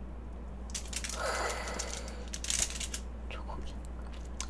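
Quiet handling noises of a slice of chocolate cake being put down on the table: a soft rustle, then a brief clatter about two and a half seconds in.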